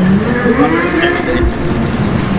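A background motorcycle engine revving up and back down once, with birds chirping briefly.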